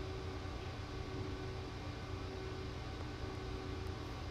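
Steady room tone: a low hum with an even hiss over it.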